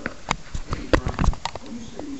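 Irregular sharp clicks and knocks, several a second, with a faint voice in the background.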